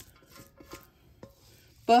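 A few faint, soft scrapes and knocks as a spatula scrapes a tater tot casserole mixture out of a mixing bowl and it drops into a casserole dish.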